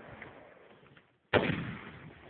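A single gunshot about a second and a half in: a sudden sharp crack that trails off in a long echo.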